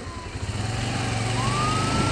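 Motorcycle engine getting louder as the bike pulls away, with a thin siren wail in the background that falls and then rises again about halfway through.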